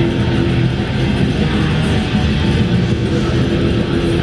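A black metal band playing live: a loud, dense, unbroken wall of electric guitars through the PA, recorded from the audience.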